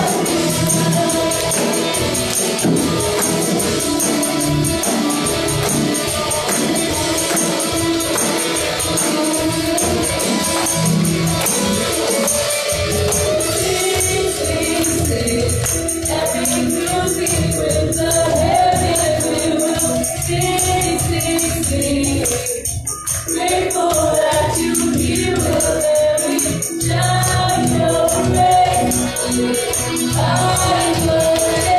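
A woman singing a gospel worship song into a handheld microphone, over instrumental accompaniment with steady low notes.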